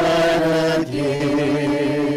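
Slow sung chant: voices holding long notes with a slight vibrato, stepping to a new note a little under a second in.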